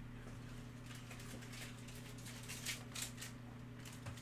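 Football trading cards sliding against one another as a hand-held stack is flipped through: a run of soft flicks and rustles in the middle, over a steady low hum.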